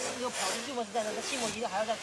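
A person speaking quietly in conversation; the words are not transcribed, with sharp hissing consonants.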